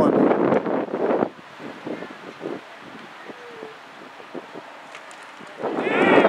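People's voices shouting near the microphone for about the first second, then a quieter stretch of wind on the microphone with faint distant voices and small knocks, and another loud shout near the end.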